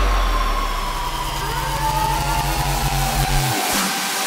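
Electronic dance track in a build-up: a long falling synth sweep over a buzzing, engine-like bass, with the bass cutting out about three and a half seconds in.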